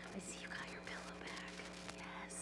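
Faint whispering and low children's voices as a group gathers, over a steady low hum.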